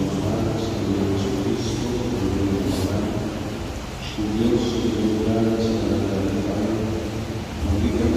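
A person's voice in a large church, with a steady low rumble underneath.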